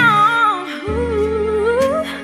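A female singer sings a wordless, winding melodic run, with backing chords held underneath that change about a second in and again near the end.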